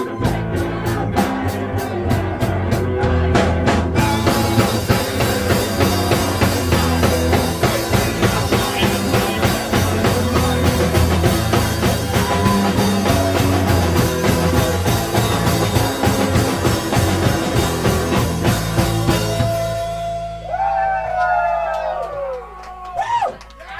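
Live rock band playing with electric guitar, keyboard and drums. The full band comes in about four seconds in after a sparser guitar start, and the song stops near the end, leaving a few gliding tones.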